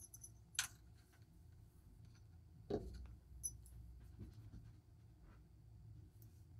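Faint handling of a Seiko SBBN027 Tuna dive watch as it is put on a wrist and its rubber strap fastened: a sharp click about half a second in, a soft knock near three seconds, and a few small ticks and rubs after.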